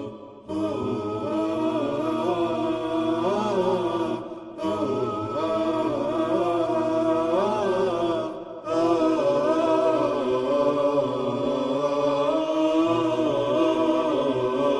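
A programme theme sung as a vocal chant, a layered singing voice with a wavering melodic line. It breaks off briefly three times, about four seconds apart.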